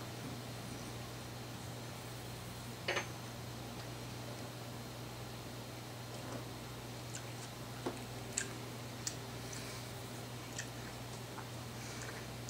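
Quiet room tone with a steady low hum, broken by a handful of faint short clicks and smacks of a man's mouth as he tastes a spoonful of hot sauce.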